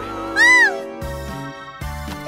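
Spooky cartoon background music with sustained notes. About half a second in, a short, high cry rises and falls in pitch once, louder than the music.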